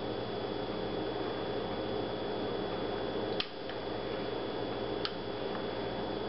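A fork stirring a raw egg into a small glass bowl of hash browns, ham and green onion: soft wet mixing, with a light click of the fork on the glass about three and a half seconds in and again about five seconds in, over a steady hum.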